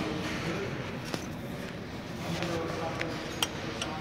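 A few light metallic clicks as a ratchet is handled and fitted onto a truck clutch's adjusting bolt, over steady background noise.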